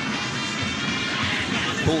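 Steady stadium crowd din, with a commentator's voice coming in near the end.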